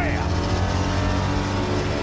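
Film sound effect of a heavy armoured car's engine, the Batmobile, running steadily in a movie-trailer mix.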